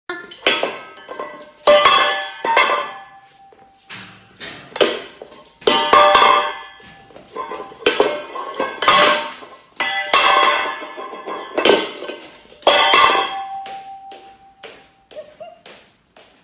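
Empty stainless steel dog bowl being flipped and shoved across a hard floor by a small dog, clattering and ringing about a dozen times at irregular intervals of roughly a second. Some of the strikes leave a clear metallic ring hanging for a second or more as the bowl spins and settles.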